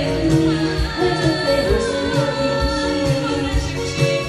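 A woman singing into a handheld microphone over backing music with a steady beat, her voice in long, wavering held notes.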